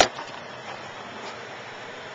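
A single sharp knock from the handheld camcorder being bumped while a plastic-packaged tripod is handled, followed by the steady background noise of a car cabin.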